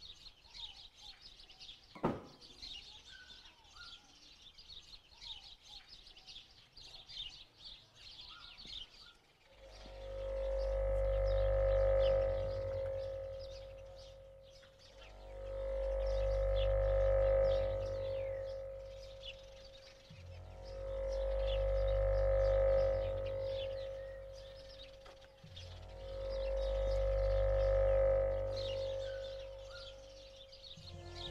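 Small birds chirping outdoors, with one sharp knock about two seconds in. From about ten seconds on, background music takes over: a sustained drone with a deep bass that swells and fades about every five to six seconds.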